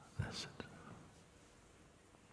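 A man's short, soft, whisper-like breath sound about a quarter second in, followed by a small mouth click.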